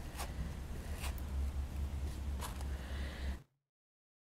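Faint rustling and scratching of hands working polyester wadding into a fabric cushion, with a few brief soft scrapes, over a steady low hum; the sound cuts off abruptly near the end.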